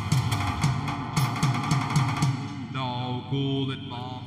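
Live band music: a drum kit with cymbal strokes over a repeating bass line. A little past halfway the cymbals stop and a held, wavering melody line comes in.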